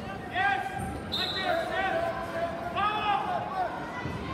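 Spectators and coaches shouting short, high-pitched calls at a wrestling bout in a gym, in three bursts.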